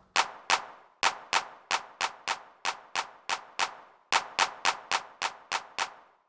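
Sampled drum-machine hand clap played over and over in a steady rhythm, about three claps a second, each with a short fading tail.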